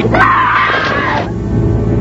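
A woman screams once, a high sustained cry lasting about a second and falling slightly in pitch, over a low rumbling music bed.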